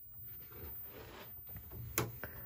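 Faint room noise in a small workshop, with a single sharp click just before the end.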